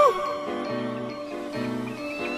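A shouted cry of "Oh!" cuts off, then a light cartoon music cue starts with short, repeated pitched chords, two of them inside this stretch.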